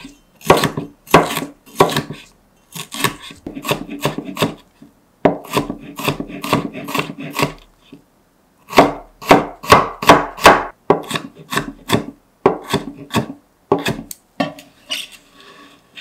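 Wide-bladed kitchen knife chopping red bell pepper on a plastic cutting board: quick runs of sharp knocks on the board, with a short pause about halfway. Near the end, softer scraping as the blade scoops up the diced pepper.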